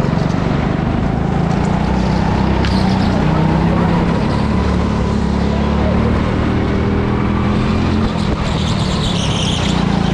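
Go-kart engine running hard, heard from on board, its pitch rising and falling as the kart accelerates and slows through the corners, with a brief high squeal near the end.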